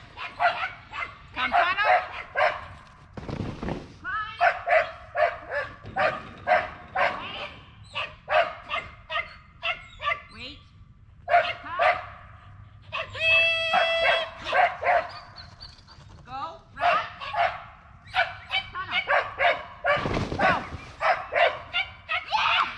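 A dog barking excitedly in fast runs of short, high barks, with one longer drawn-out call about halfway through.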